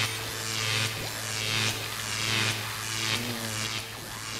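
Electronic sci-fi machine sound effect: a steady electric hum with a pulsing swell repeating a little more than once a second, standing for the monster-making machine at work.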